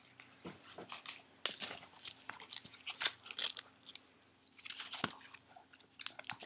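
Handling noise from a mask being turned and rubbed right up against a webcam's microphone: irregular crackling and scraping, busiest in the first half and again about five seconds in.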